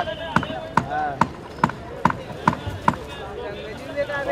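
A regular series of sharp knocks or slaps, a little over two a second, that stops about three seconds in, with voices talking.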